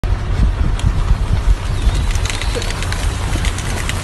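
Rain falling around a parked car, with a heavy, uneven low rumble and a few light ticks about two seconds in.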